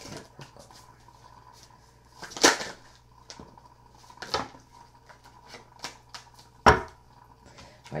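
Arcanum Tarot deck being shuffled by hand, with small rustling ticks and three louder sharp snaps, a couple of seconds apart.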